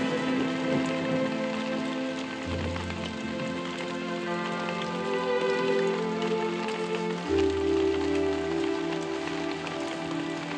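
Steady rain falling, under slow film music of long held chords. A deep low note comes in about two and a half seconds in and again about seven seconds in.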